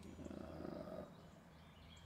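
A person's quiet, creaky drawn-out hesitation sound, about a second long, over a steady low hum.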